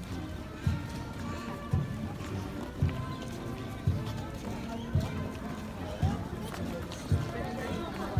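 A marching bass drum beating steadily, about one beat a second, over the chatter of a crowd.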